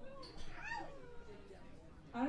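A voice making a short, high vocal sound that rises and falls in pitch about half a second in, with quieter talk around it.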